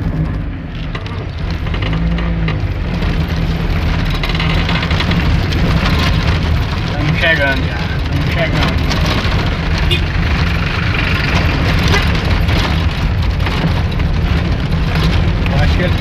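A car driving, heard from inside the cabin: a steady low rumble of engine and road noise.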